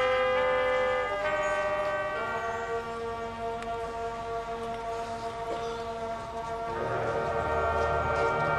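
Marching band brass and winds playing held chords, moving to a new chord about a second in and again about two seconds in, then sustaining. Low percussion swells in near the end as the band grows louder.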